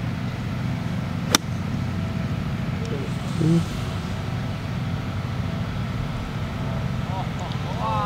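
An iron club striking a golf ball once, a single sharp click about a second and a half in, over a steady low outdoor rumble.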